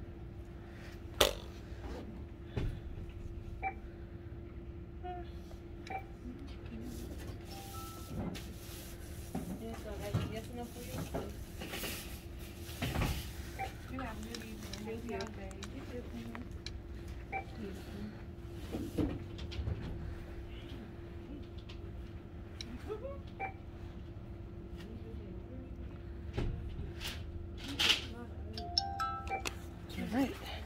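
Checkout counter sounds: background music and faint talk over a steady hum. Scattered handling clicks, and a few short electronic beeps from the checkout.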